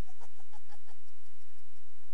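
A short burst of laughter: about six quick, evenly spaced 'ha' pulses in the first second, then it fades out.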